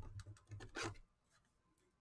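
A clear plastic card holder with a trading card inside being handled by fingers: a sharp click right at the start, then a few lighter clicks and rubs during the first second.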